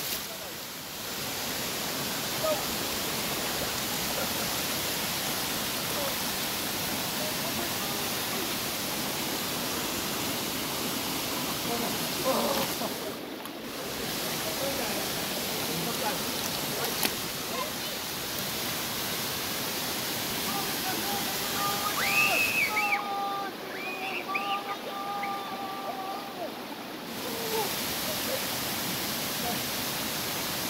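Steady rush of a waterfall and its rocky stream, running water close to the microphone.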